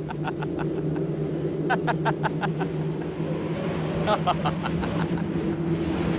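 A man laughing in bursts of rapid ha-ha pulses, three times, over a steady low droning hum.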